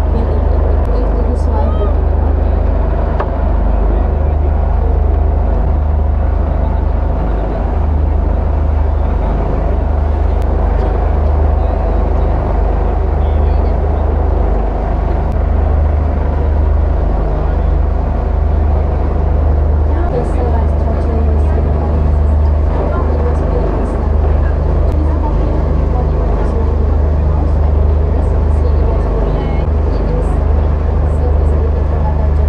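Steady low rumble of a river cruise boat under way, its engine drone mixed with wind over the open deck, with passengers chattering in the background.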